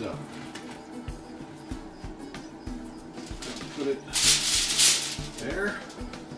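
Aluminium foil crinkling and rustling as a smoked beef brisket is wrapped in it by hand, with soft knocks on the counter and a loud burst of crackling about four seconds in.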